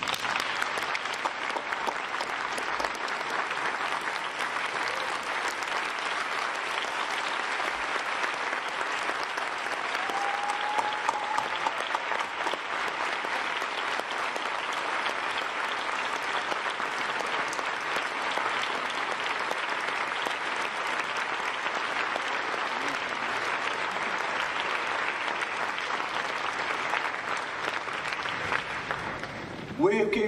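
An audience applauding steadily and at an even level for about half a minute, welcoming a speaker who has just been introduced.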